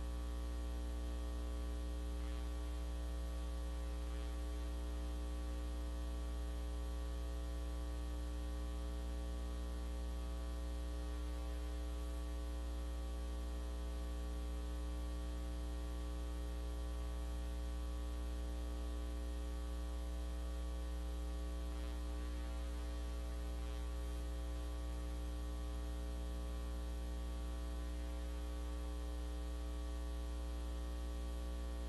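Steady electrical mains hum on the audio feed: a low, unchanging drone with a ladder of higher buzzing overtones and a faint hiss, and no other sound.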